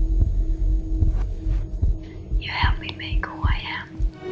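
A deep, throbbing rumble with soft low thuds, and a whispered phrase in its second half, about two and a half seconds in.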